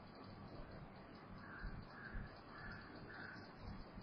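Faint room hiss with a distant bird calling four times, about half a second apart, near the middle.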